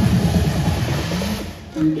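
Up-tempo electronic disco dance music playing over loudspeakers, ending abruptly about one and a half seconds in. A voice begins "thank you" just before the end.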